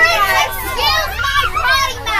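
Children's high-pitched voices shouting and chattering over the low, steady rumble of a bus engine.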